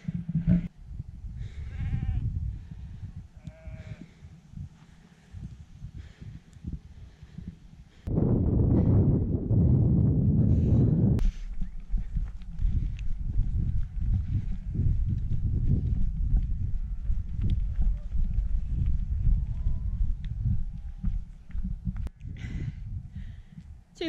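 Sheep bleating a few times in the first seconds, over a steady low rumble of wind on the microphone. From about 8 to 11 seconds in, a louder gust of wind buffets the microphone.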